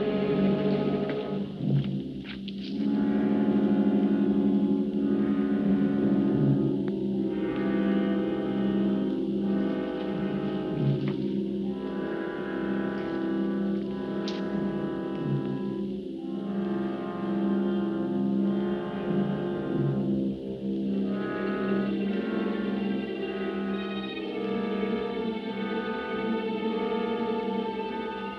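Orchestral film score: sustained brass and string chords with a tense, repeating pulse about every two seconds.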